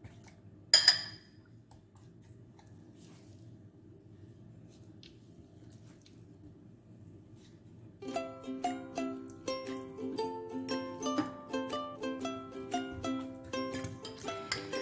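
A fork clinks once against a glass bowl about a second in, followed by a quiet low hum. From about eight seconds in, plucked-string background music plays.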